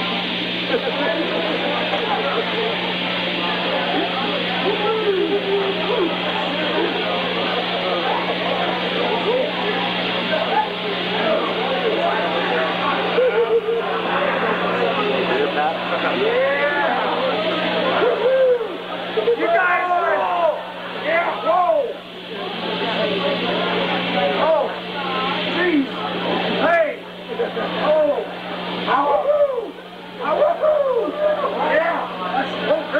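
Club crowd talking and shouting, many voices at once over a steady amplifier hum; from about the middle on the voices turn into louder, separate shouts and yells with short lulls between them.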